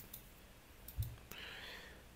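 A few faint, scattered clicks from a computer mouse and keyboard being used at a desk, with one louder low thump about a second in.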